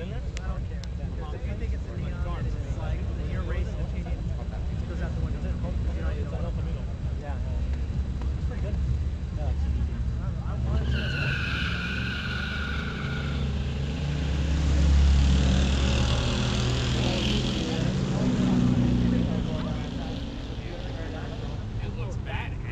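A Ford Gran Torino and a Buick Grand National with its turbocharged V6 running at a drag strip's starting line, then launching and accelerating hard down the track. A high squeal of tires comes about halfway through. The engine noise then swells to its loudest for several seconds and eases off as the cars pull away.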